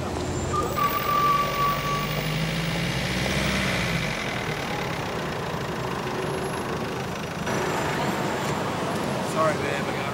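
A car drives past on a wet city street, its tyres hissing and engine rumbling for the first few seconds, with a brief steady high tone about a second in. Street traffic noise continues after that.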